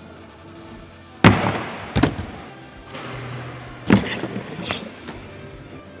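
Mountainboard trucks with cross-lockers hitting and grinding a skate-park ledge: a loud slam about a second in, trailed by a short scrape, then further knocks as the board comes off and lands, about four impacts in all.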